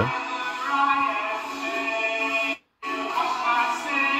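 Recorded church singing with accompaniment, played back through a computer monitor's small built-in speakers: thin, with no bass at all. The sound cuts out completely for a moment just past halfway.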